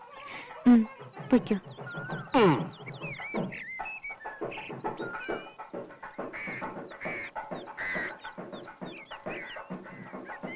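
Film soundtrack of a village yard: hens clucking and small birds chirping throughout, with a loud falling call about two and a half seconds in, under soft background music.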